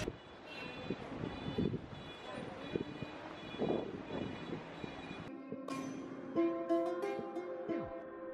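Street noise picked up by a handheld camera while walking, with scattered knocks. About five seconds in, it gives way to light background music with a plucked-string melody.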